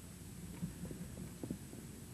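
Low steady hum with a few faint, soft knocks from things being handled at a lectern and overhead projector.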